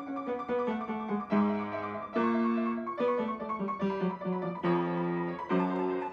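Solo piano music in slow, held chords, a new chord struck roughly every half second to a second.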